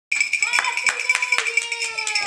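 Children's party noise: sharp claps or slaps a few times a second over a steady high-pitched tone and a long held note that slowly falls in pitch.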